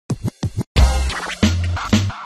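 Intro music sting with turntable-style scratching over a heavy bass beat: three short hits open it, then the full sting comes in just under a second in.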